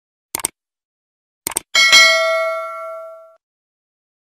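Sound effect of a subscribe-button animation: two quick double clicks like a mouse button, then a bright bell ding that rings out and fades over about a second and a half, the notification bell being pressed.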